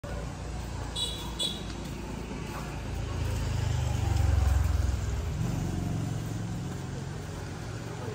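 Street traffic with a motor vehicle engine passing close by, swelling to its loudest about four seconds in and then fading. Two brief high-pitched tones sound about a second in.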